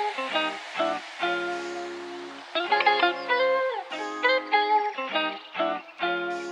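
Background music: a guitar plucking a melody and chords, each note ringing and fading, in short phrases with brief gaps.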